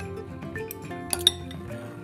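A metal fork clinking against dishes as creamy cucumbers are served, with a couple of sharp clinks a little over a second in, over steady background music.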